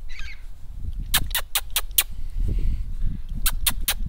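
Magpie chattering: two quick rattling runs of harsh clicks, about five a second, the first about a second in and the second near the end.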